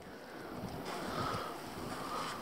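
Faint wind rushing over the microphone, a soft steady noise without any distinct events.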